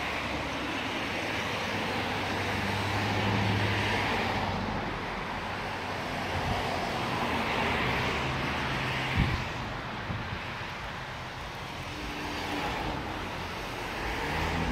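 Highway traffic passing close by: a steady rush of tyres and engines that swells and fades as cars go by, over a low engine hum. A brief thump about nine seconds in.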